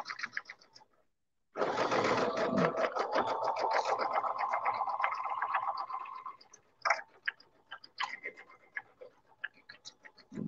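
Computerized sewing machine stitching a seam through minky plush fabric: a rapid, even run of needle strokes over a steady motor whine. A brief burst at the start, then a longer run of about five seconds that stops, followed by a few scattered light clicks.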